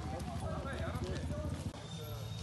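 A motorcycle engine idling with a fast, even low thump, under the voices of people talking nearby.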